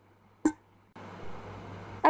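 A single light click, then from about a second in a steady hiss of hot oil sizzling in a frying pan as the fried snacks are lifted out.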